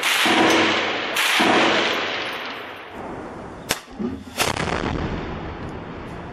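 Loud weapons fire echoing in a ruined street: two heavy blasts about a second apart, each trailing off in a long rumbling decay, then two sharp cracks a little past the middle, followed by a fading echo.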